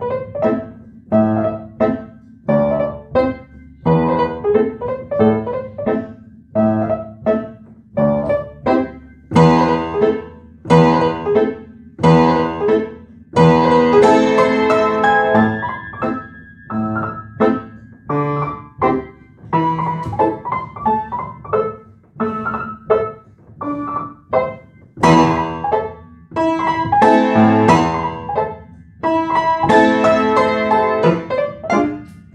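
Solo upright piano playing a fast, light prelude: short phrases of quick treble notes over a low bass note and off-beat chords, repeating about once a second with the sustain pedal. It swells louder in the middle and again near the end.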